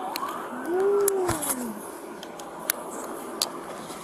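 A police siren wailing, its pitch sliding up and then down in the first two seconds, with a few light clicks throughout.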